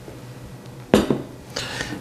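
A large glass mixing bowl set down on a wooden countertop: one sharp knock about a second in with a short ring, followed by softer handling sounds.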